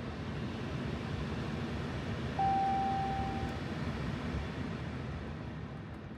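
A single steady electronic chime from a Ram pickup's instrument cluster, lasting a little over a second about two and a half seconds in, over a steady low rumble.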